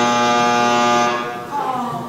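Electric doorbell buzzer: one long, steady buzz that starts suddenly and stops about one and a half seconds in, signalling someone at the door.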